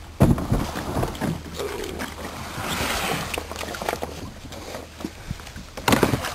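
Plastic kayak hull knocking and scraping, with water sloshing, as it grounds on the shore and someone climbs out. A sharp knock comes just after the start, with a swishing spell near the middle.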